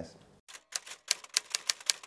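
Typewriter keys clacking in a quick, uneven run of sharp strikes that starts about half a second in.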